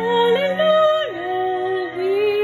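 A woman singing the soprano line of a choral song, holding a note that steps up twice and then slides down to a lower held note about a second in. A steady low accompaniment note sounds underneath and stops about a second in.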